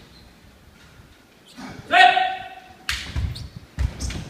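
A kendo kiai: one loud, high-pitched drawn-out shout about two seconds in, followed near the end by sharp cracks of bamboo shinai and heavy thuds of bare feet stamping on the wooden floor.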